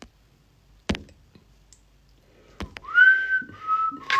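A man whistling a short phrase through pursed lips near the end: a note that slides up and holds, then two slightly lower notes. Two sharp clicks come before it.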